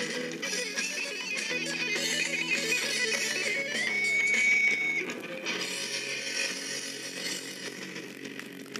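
A band's guitar-led song near its end: strummed electric guitar chords, with a high note held for about a second around the four-second mark, after which the playing thins out and gets quieter.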